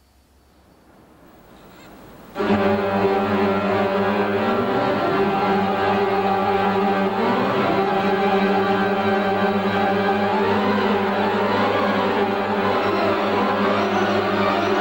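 Mighty Wurlitzer theatre pipe organ playing a piece written to accompany a roller coaster ride on film. After a faint first two seconds, full sustained chords come in suddenly, with runs sweeping up and down over them.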